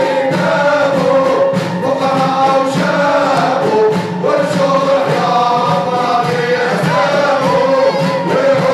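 Aissawa Sufi chant: men's voices singing together over large hand-beaten frame drums (bendir) keeping a steady rhythm.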